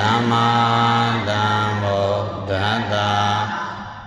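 A Buddhist monk chanting in Pali, his voice holding long drawn-out notes with slow rises and falls in pitch; the chant fades out near the end.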